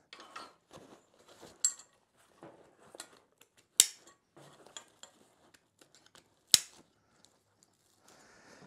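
Metal tree-climbing sticks (Tethrd Skeletor sticks) being handled and stacked onto a hunting backpack: scattered light metallic clinks and knocks, with sharper knocks about a second and a half, four and six and a half seconds in.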